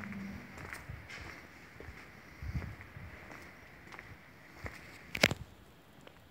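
Footsteps of a person walking on paving, soft low thuds, over a faint steady high-pitched hum. A single sharp click about five seconds in is the loudest sound.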